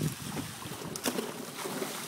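Faint outdoor background: a low rush of wind on the microphone and water moving in the swimming pool, with a couple of small clicks about a second in.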